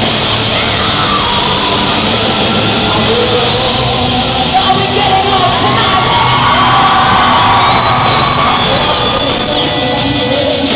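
A hard rock band playing live, with guitars, drums and vocals, loud and steady, heard from within the audience.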